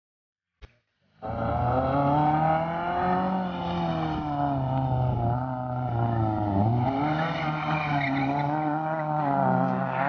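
Fiat Seicento rally car's engine running hard at high revs. It starts suddenly after a short click about a second in, its pitch wavers, and it dips sharply and climbs again about two-thirds of the way through.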